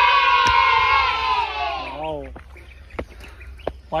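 A group of people shouting together in one long, loud held yell that sinks a little in pitch and dies away about two seconds in. A single shorter call follows.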